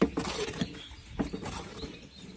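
Cement mortar being mixed with a hoe in a plastic mortar trough: wet scraping and slopping of the mix, with a sharp knock at the start and a few lighter knocks of the tool against the tub.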